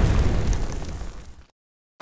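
The fading tail of a deep, explosion-like boom sound effect for an intro title. It dies away and cuts off suddenly about one and a half seconds in, leaving a short silence.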